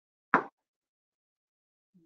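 A single short pop, lasting a fraction of a second, about a third of a second in.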